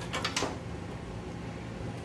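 A few short clicks and rustles of cables and plastic connectors being handled inside a metal server chassis, in the first half second, then only a steady low hum.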